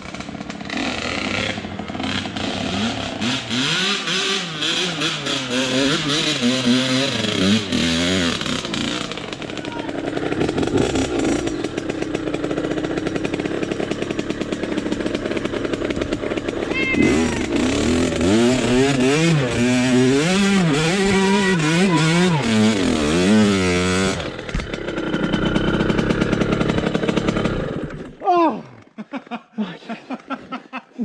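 Dirt bike engine running under load on a rough trail, its pitch rising and falling with the throttle. It eases off about a third of the way in, revs hard again in the second half, and drops away sharply near the end.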